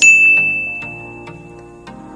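A single high chime, a ding struck once at the start that rings on one note and fades away over about two seconds, over soft background music.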